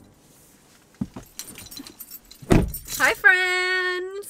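Keys jangling and a dull thump inside a car, then near the end a woman's voice holding one long, steady note, like a sung "oooh".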